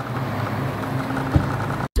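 Outdoor background noise with a steady low hum, broken by a single short knock a little past halfway; it cuts off suddenly near the end.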